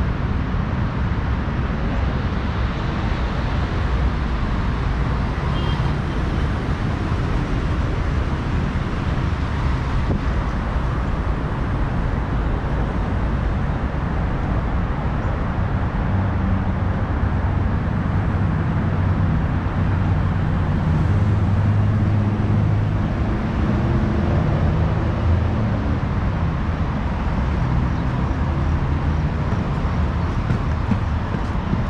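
Steady road traffic noise, with a heavier vehicle's low engine hum swelling about two-thirds of the way through and then fading.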